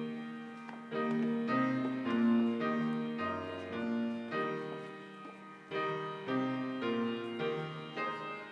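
Piano playing a slow passage of chords, each struck and left to ring, with no voices singing.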